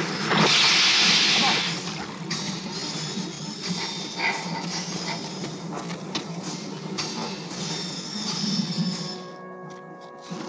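Film soundtrack: music under sound effects, opening with a loud hissing rush of noise lasting just over a second, then a quieter mix with scattered short knocks.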